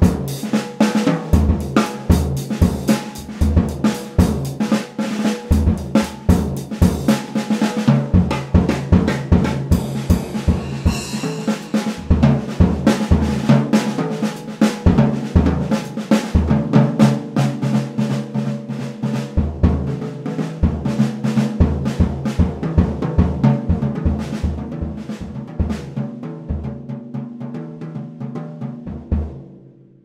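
A vintage 1960s Slingerland drum kit (20-inch bass drum, 12-inch and 14-inch toms) with a Craviotto titanium snare, played with sticks in a jazz style: a busy run of snare and tom strokes, bass-drum beats and cymbal hits. The playing thins out and rings away near the end.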